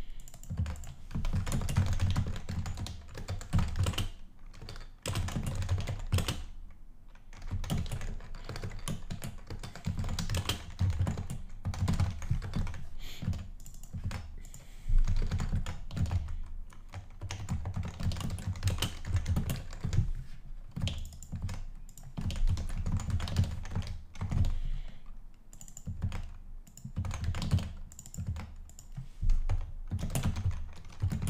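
Typing on a computer keyboard: quick irregular runs of keystrokes broken by brief pauses, with one harder stroke about halfway through.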